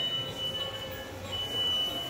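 A high-pitched electronic beep, one steady tone, repeating about every 1.3 seconds with each beep lasting about two-thirds of a second, over faint shop background noise.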